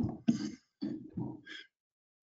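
A man clearing his throat in several short bursts.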